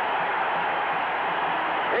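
Football stadium crowd cheering in a steady, even wash of noise just after a successful extra-point kick, heard through a band-limited old television broadcast.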